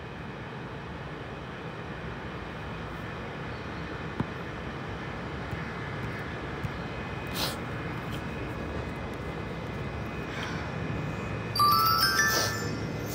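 Steady background hum with no speech, broken by a single click and a brief rush of noise. Just before the end comes a quick chime of a few stepped, rising tones.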